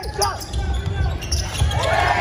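Basketball game in a large gym with a hardwood court: repeated low thuds of the ball and players' feet on the court under shouting voices, with many voices of the crowd rising together near the end.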